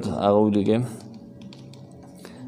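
A man's voice speaks for about the first second, then pauses, leaving a low background with a faint steady hum.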